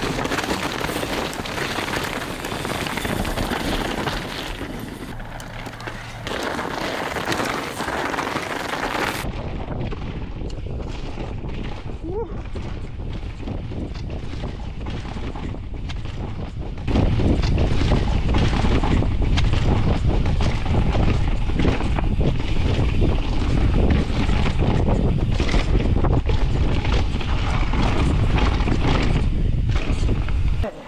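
Downhill mountain bike being ridden fast down a dirt forest trail. Wind buffets the action-camera microphone and mixes with the bike's rattle and tyre noise. The rumble gets much louder and heavier about halfway through.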